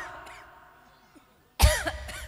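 A single cough over a PA microphone about one and a half seconds in, sudden and loud, with a short voiced tail. Before it, the end of a spoken phrase dies away with echo.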